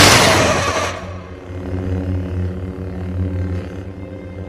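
A loud, noisy sound effect dies away over the first second, followed by quiet, held low notes of tense film-score music.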